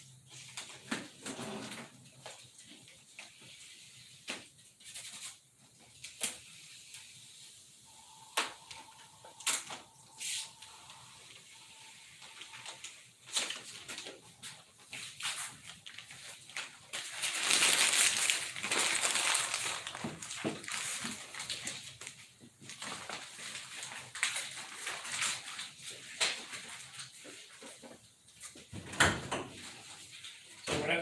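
Hands taping up a model airplane fuselage: masking tape pulled, pressed on and handled, with scattered small clicks and taps and a longer rustling, tearing noise about 17 seconds in. A brief faint steady tone sounds around 8 seconds in.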